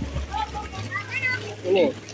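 Children's voices calling out in a shallow pool, with light water sounds and an adult's brief word near the end, over a low steady hum.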